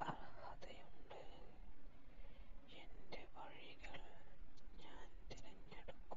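A person whispering in short breathy phrases with hissing s-sounds, broken by brief pauses.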